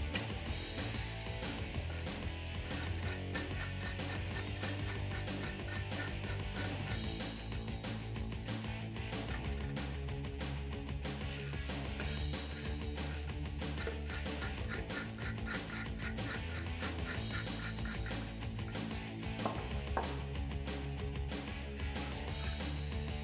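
Socket ratchet clicking in quick runs as it backs 13 mm nuts off a steel exhaust bracket, over steady background music.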